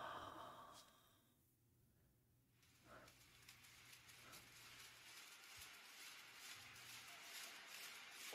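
Near silence: a faint exhale at the start, then a faint hiss that builds slowly from about three seconds in.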